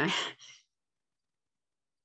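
A woman's voice ending a phrase with a short laugh and a breathy, sighing exhale, over in about half a second.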